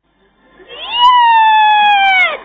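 A woman's long, loud, high scream of joy, played through a TV speaker. It starts about half a second in, rises and then slowly falls in pitch.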